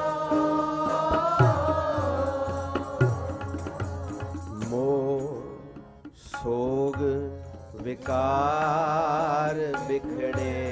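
Sikh Gurbani kirtan: singing over a harmonium drone with tabla strokes underneath. The singing breaks off briefly about six seconds in, then resumes.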